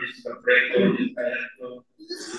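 A man's voice speaking in short broken phrases into a microphone.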